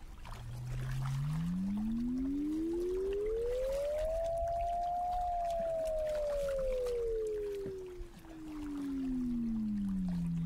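Sonic Kayak sonification, a synthesized tone turning sensor readings into pitch. Over about four seconds it glides smoothly up from a low hum to a mid-range pitch, holds there briefly, then slides back down to a low pitch by the end, dipping in volume about eight seconds in.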